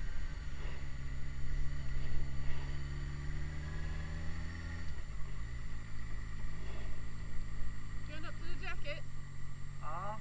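Motorcycle engine running at low revs while the bike rides slowly. The engine note rises gently, drops about halfway through, then holds steady at a lower pitch.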